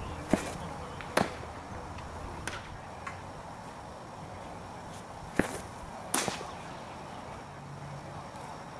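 Sharp leather pops of baseball pitches smacking into a catcher's mitt: two pairs of cracks, one pair early and another about five seconds in.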